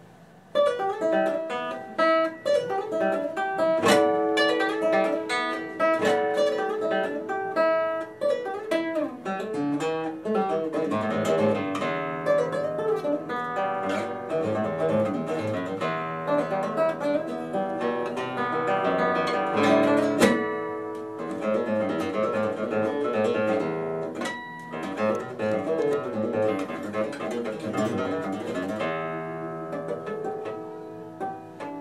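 Orpheus Valley Fiesta cutaway classical guitar, with a cedar top and rosewood back and sides, fingerpicked in a solo classical piece. The playing starts about half a second in and runs as a continuous stream of plucked notes.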